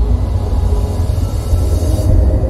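Cinematic logo-reveal sound effect: a loud, deep rumble with a rushing hiss that brightens near the end.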